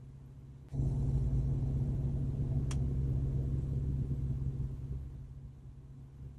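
A vehicle engine's low steady rumble, jumping abruptly louder about a second in and easing off toward the end. A brief high tick is heard near the middle.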